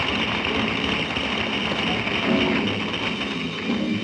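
Live jazz quartet of tenor saxophone, piano, double bass and drums playing a fast piece, under a steady wash of cymbals.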